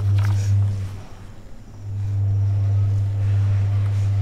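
A steady low electrical hum that drops out for about a second and then comes back, with brief paper rustling near the start as a sheet of card pages is moved.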